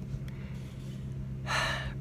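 A woman draws in an audible breath lasting about half a second, near the end, before she speaks. A steady low hum runs underneath.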